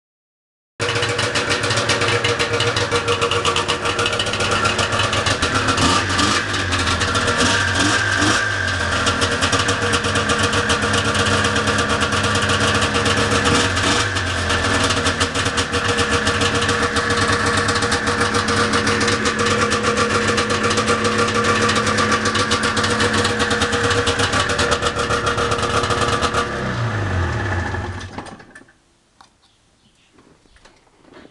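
1989 Arctic Cat El Tigre 440 snowmobile's two-stroke engine running steadily at idle in a garage. Near the end it is shut off and winds down over a couple of seconds to a stop.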